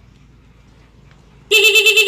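Motorcycle disc horn sounding through a stutter horn module, starting about one and a half seconds in as a loud steady-pitched tone broken into rapid, even pulses. It sounds again now that the module's reversed wires have been swapped back to the right polarity. Faint clicks of wire handling come before it.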